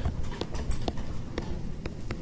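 Stylus tapping on a tablet screen as line strokes are drawn: about four sharp ticks, roughly one every half second, over a low rumble.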